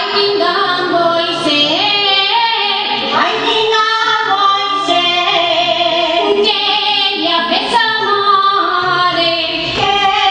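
Women's voices singing a traditional Valencian folk song in unison, accompanied by a rondalla of guitars and other plucked string instruments.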